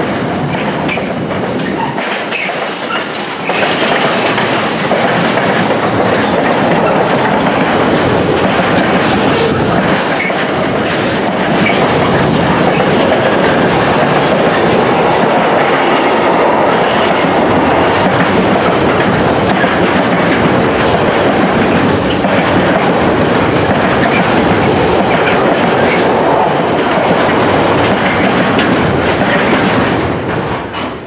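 Container flat wagons of a long freight train rolling past close by: a continuous loud noise of steel wheels on the rails. It is a little quieter for the first few seconds, then holds steady as the rest of the wagons go by.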